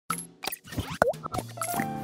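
Intro music with cartoon-style sound effects for an animated logo: a quick run of pops and clicks, a swooping pitch glide about a second in, then held musical tones settling in near the end.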